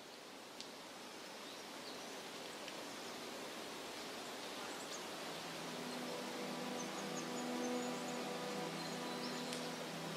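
Faint outdoor forest ambience: a steady hiss of wind through the trees with a few faint high chirps. About halfway through, a low held musical tone fades in underneath.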